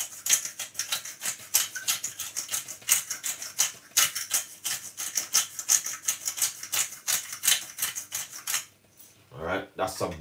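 Hand pepper mill grinding black pepper: a fast, continuous run of crunching clicks for about eight and a half seconds, then it stops.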